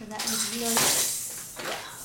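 Hard plastic baby toys clattering and rattling as they are handled and set down on a plastic high chair tray, with a loud clatter about a second in. A short voice sounds just before it.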